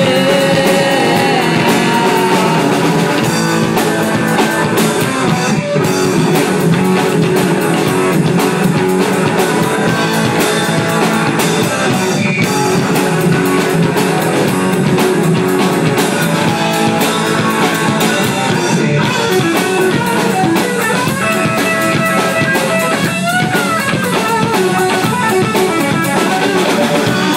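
Live punk/grunge band playing: electric guitars over a drum kit, loud and steady, with little bass.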